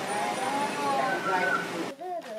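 Children's voices calling out over a loud, steady din of noise.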